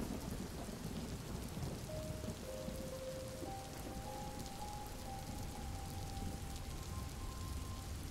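Steady rain falling, with a low rumble underneath. From about two seconds in, faint held musical notes sound softly over it, shifting pitch a few times.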